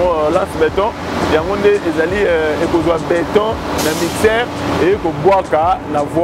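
A man talking without pause over a steady low hum.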